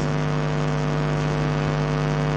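Steady electrical hum of a public-address sound system, several unwavering tones held at an even level.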